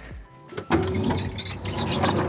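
Latch and metal door of an ambulance's exterior battery compartment being opened: a sudden clunk as the latch releases, then rattling and scraping as the door swings open.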